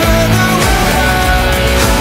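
Electric guitar playing the song's melody as a lead line with long held notes, over a band backing track with bass and drums.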